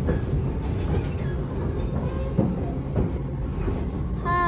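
Subway train car heard from inside while running: a steady low rumble with a few short knocks from the wheels and car body.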